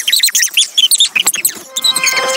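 Cartoon voices played back four times too fast, pitched up into rapid, squeaky chipmunk-like chatter. Near the end this gives way to music with held notes.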